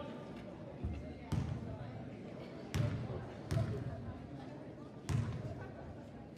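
A basketball bouncing on a gym floor five times, slowly and unevenly, each bounce a dull thud with a sharp slap on top, over a steady murmur of voices.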